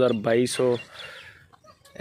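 A man speaking, his voice trailing off about a second in, then a brief lull.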